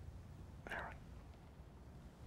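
Quiet room tone with a low hum, broken once, about two-thirds of a second in, by a single short breathy vocal sound lasting under half a second.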